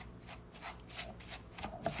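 A silicone spatula stirring dry granulated sugar in a nonstick saucepan, in quick repeated scraping strokes. The sugar is still dry and unmelted, at the start of heating it over low heat for a caramel syrup.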